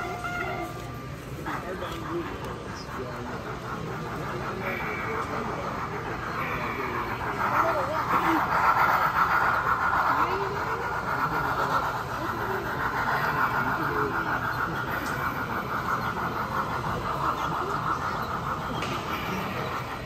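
Small electric motor and gears of a LEGO train locomotive running along the track with a buzzing whine, loudest about a third of the way in as it passes close by. Crowd chatter runs underneath.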